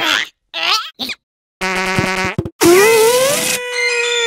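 Cartoon sound effects: three short, squeaky character vocal sounds, then a buzzy fart sound about one and a half seconds in, and a longer tooting fart tone that rises and then holds steady near the end.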